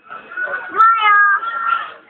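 A baby's drawn-out, high-pitched whine, rising and then held for about a second, while he is being bottle-fed.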